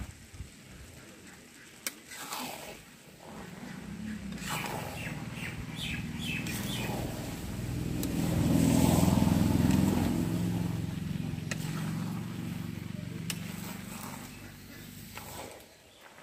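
A motor vehicle's engine passing by: its low drone builds, is loudest about nine seconds in, then fades away. A few sharp clicks of a spatula against the steel kadai come through as the rice and chicken are mixed.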